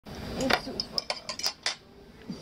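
A metal knife and fork clinking against a ceramic plate while food is cut, about six sharp clinks with a bright ring, ending near the end.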